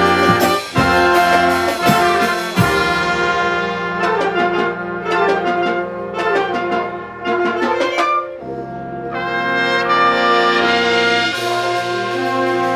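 High school wind band of saxophones and brass playing: held full chords, then a lighter stretch of short, detached notes in the middle, and full chords swelling back in after about eight seconds.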